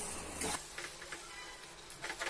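Wooden spatula stirring thick masala in a steel pan: faint scraping strokes over a low sizzle.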